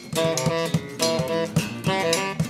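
A small live band playing a rhythmic tune: guitars strummed in a steady rhythm, with saxophones holding notes over them.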